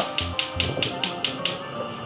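Gas hob's spark igniter clicking rapidly, about five clicks a second, as the burner under the wok is lit; the clicking stops about a second and a half in.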